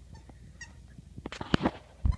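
Small dog at play with a toy: two faint short high squeaks in the first second, then a quick run of loud knocks and scuffs about a second and a half in.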